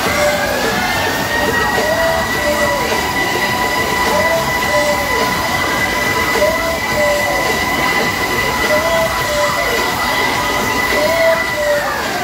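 Fairground ride's cars running at speed around an undulating circular track, giving a loud steady mechanical whine at two pitches that climbs at the start and drops away near the end. A swooping tone recurs about every two seconds as the cars go round.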